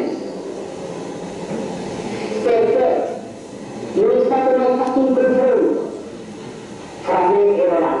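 A man speaking in short phrases with pauses, from the soundtrack of an old film played back in a hall, over a steady background noise.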